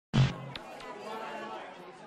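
A sudden loud hit just after the start, followed by indistinct background chatter that slowly fades.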